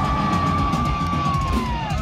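Live concert sound: a single high, steady electric-guitar feedback tone held through an amplifier, bending down in pitch just before it stops near the end, over a low rumble from the stage.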